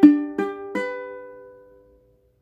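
Ukulele strumming a G major chord: three strums in quick succession, then the chord rings on and fades away.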